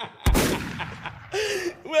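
A sudden deep thump about a quarter second in, dying away over about a second, amid hearty laughter; a drawn-out pitched voice sound follows near the end.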